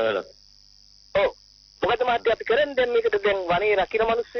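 Speech only: a voice talking, with two short phrases at the start and about a second in, then steady talk from about two seconds in.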